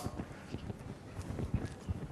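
Faint, irregular light taps and clicks over a low background hiss.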